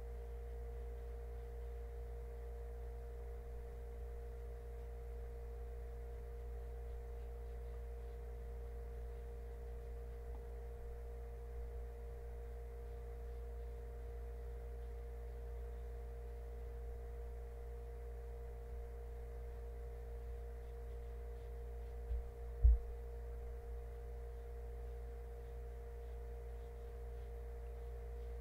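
Steady electrical hum: a low drone with a couple of steady higher tones above it. Two brief low thumps come close together about three-quarters of the way through, the second louder.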